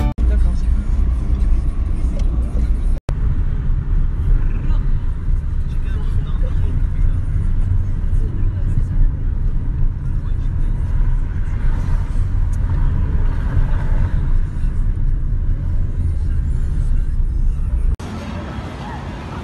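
City road traffic: cars and motorbikes making a loud, steady low noise, with indistinct voices mixed in. The sound cuts out briefly about three seconds in.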